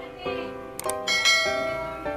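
Subscribe-button animation sound effect: a mouse click followed by a ringing bell chime, with a second click and chime about a second in.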